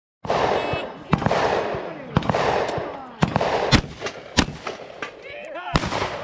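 A string of seven gunshots at roughly one-second intervals from a cowboy action shooting run, each crack followed by a short ringing, echoing tail.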